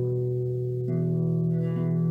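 Nylon-string classical guitar being fingerpicked: a low bass note rings on while higher strings are plucked, new notes coming in about a second in and again near the end, an arpeggio alternating between the bass and the treble strings.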